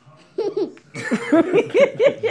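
A toddler giggling, a quick run of short, high-pitched laughs that starts about half a second in.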